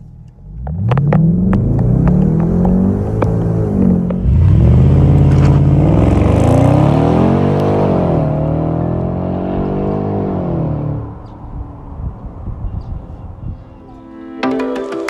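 Jaguar XFR's supercharged V8 launched hard and accelerating at full throttle, revving up with two upshifts about 4 and 8 seconds in, then easing off around 11 seconds.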